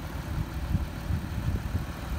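Car engine idling: a low, uneven rumble with no clear tone.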